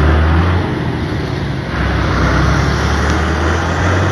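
Tractor engine running under way, heard from on board as a steady low drone over road noise. The drone eases for about a second shortly after the start, then carries on as before.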